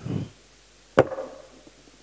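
A single sharp knock about a second in, with a short ring after it, from handling the equipment at the table.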